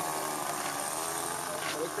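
Methanol-fuelled glow engine of a radio-controlled model Piper Cherokee running steadily as the plane taxis on the ground.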